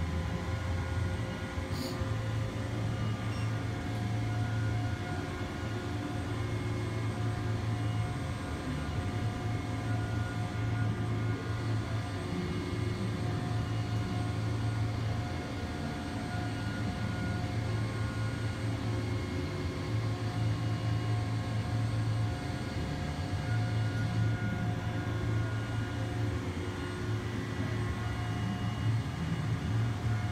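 Brown & Sharpe coordinate measuring machine running a scanning probe around the bore of an aluminum ring: a steady low hum that swells and eases in stretches as the axes move, with faint steady whines above it.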